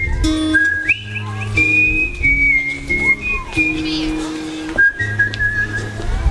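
Acoustic guitar picking a song's intro, with a whistled melody over it in long, clear held notes that glide between pitches.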